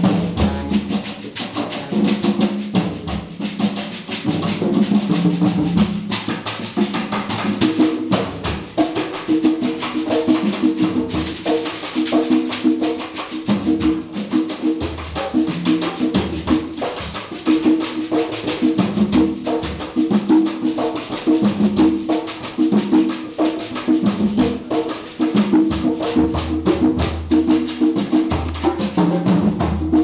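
Small jazz band playing live: congas and a drum kit keep a busy, steady rhythm under a repeated low riff from the horns and bass.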